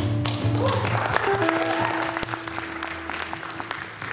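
A jazz band's chord cuts off, and audience applause breaks out under a single long held note from one instrument.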